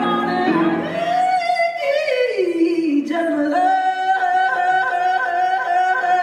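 Female jazz singer holding long notes with vibrato, with a slow falling phrase about two seconds in before settling on another long held note.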